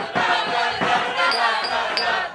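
A group of voices singing a cappella over a steady beat of low thumps, about three to four a second.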